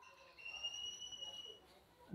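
Faint outdoor background with a bird's single steady whistled note, held for about a second.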